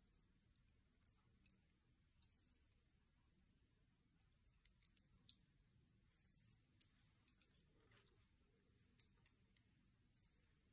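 Very faint, irregular clicking of wooden double-pointed knitting needles tapping together while knitting a two-by-two rib, with a couple of brief soft rustles of yarn.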